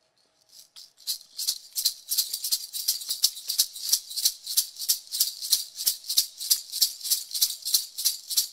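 A hand rattle shaken in a steady beat, about three shakes a second, starting about a second in, as the lead-in to a Mohawk water song.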